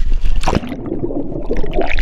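Sea water splashing over an action camera as it goes under, about half a second in, followed by muffled underwater gurgling and churning. There are splashes again near the end.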